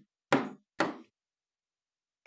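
Two sharp knocks about half a second apart, each dying away quickly.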